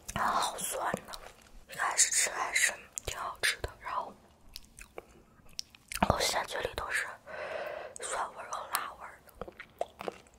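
A woman speaking softly, half-whispering, close to the microphone, in two stretches with a pause between. Wet mouth clicks and a little chewing come through between the words.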